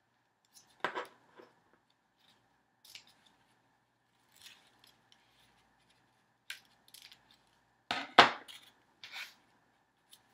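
Scissors snipping the ends of a satin ribbon on a paper tag, a few scattered short cuts with light paper handling between them. Near the end comes a louder knock as the scissors are laid down on the table.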